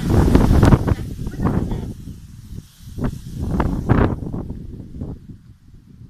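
Wind buffeting the microphone in irregular gusts of low rumble, fading out near the end.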